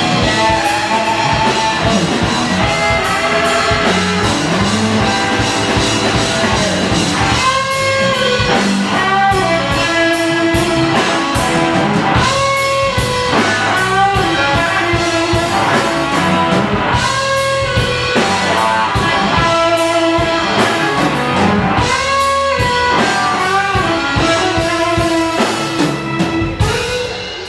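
Live blues band playing loudly through stage amplification: an electric guitar playing repeating melodic phrases over bass guitar and a drum kit.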